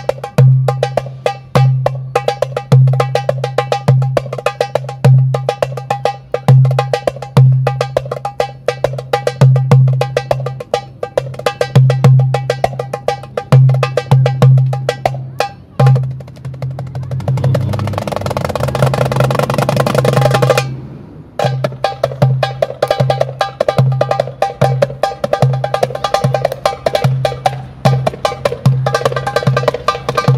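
Metal darbuka (Arabic goblet drum) played solo by hand: deep, booming centre strokes set against quick, sharp rim strokes in a driving rhythm. About two-thirds of the way through it breaks into a fast continuous roll for about four seconds, stops for a moment, then the rhythm picks up again.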